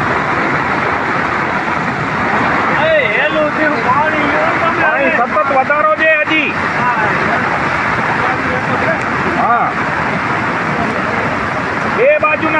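Floodwater rushing over a road in a steady, loud roar. Voices call out over it from about three to seven seconds in, and once more briefly near the end.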